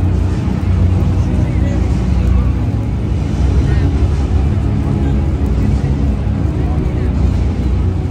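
Amplified sound booming through a large arena's public-address system, bass-heavy and echoing, with a voice and music mixed together.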